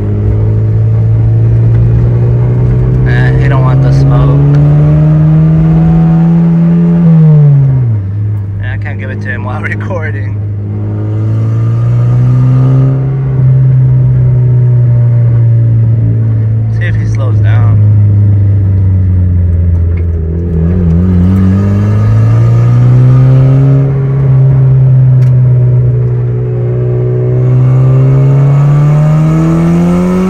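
Turbocharged car engine heard from inside the cabin, pulling through the gears: the revs climb slowly, drop sharply at a shift about seven seconds in, hold steady, then climb again twice, with another drop at the very end.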